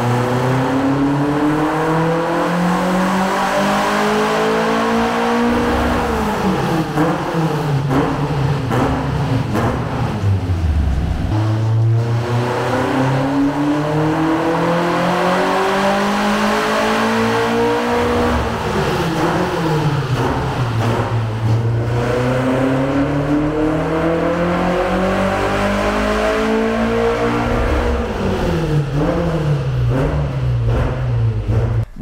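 Volkswagen AP 2.1-litre naturally aspirated four-cylinder with individual throttle bodies, in a VW Saveiro, making full-throttle pulls on a chassis dynamometer. Three times the revs climb steadily for about five or six seconds and then fall away as the engine coasts back down.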